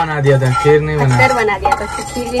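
A voice talking over a utensil stirring and scraping in a metal cooking pot.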